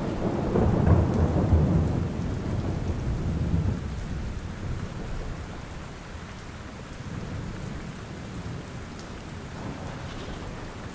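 Steady rain falling, with a low rumble of thunder that rolls through the first few seconds and then fades away.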